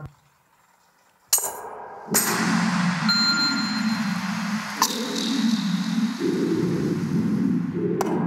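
Live electronic music from phone and tablet music apps played through a mixer. It drops out for about a second, then a sharp ringing ding sounds. From about two seconds in, a dense low sustained layer plays, with a couple of sharp clicks.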